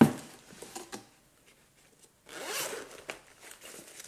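Zipper of a Ju-Ju-Be Be Set pouch pulled open in one rasp lasting about a second, a little past halfway through, after a brief pause. A sharp thump at the very start is the loudest moment.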